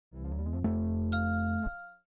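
Short musical logo sting: a sustained synthesizer chord, joined about a second in by a bright bell-like ding, stopping shortly before the end.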